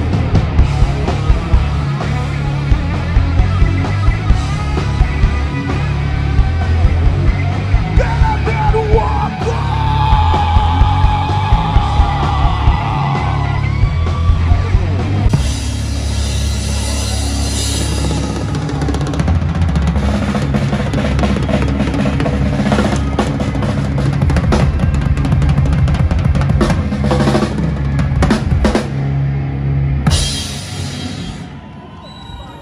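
Live punk-rock band playing: electric guitars and bass over a drum kit. A pitched melody line stands out in the middle, and the drums and cymbal crashes come to the front in the second half.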